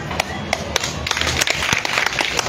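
Scattered hand claps from a seated crowd, a few separate claps at first, thickening into light applause about a second in.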